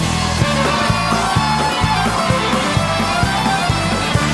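Live country-rock band playing an instrumental break: fiddle over electric guitar, bass and drums, with a steady beat of about two drum hits a second.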